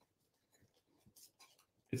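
Faint, light scratching of hand crafting work: small scissors cutting decoupage paper and a paintbrush stroking over a painted tin. A voice starts just at the end.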